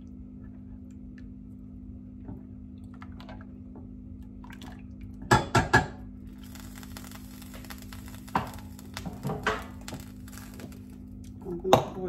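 Silicone spatula stirring a drink in a glass blender jug, with three quick sharp knocks of the utensil against the glass about five seconds in and a few more knocks later, the loudest near the end. A steady low hum runs underneath.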